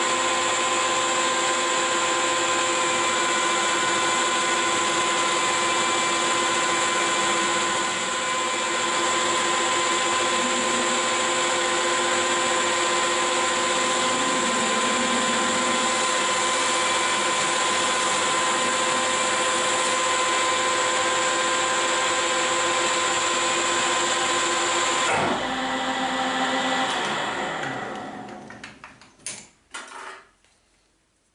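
Metal lathe running under power with a steady gear whine as it turns a small metal shaft. About 25 seconds in the sound changes suddenly and the spindle runs down to a stop, followed by a few sharp metallic clicks.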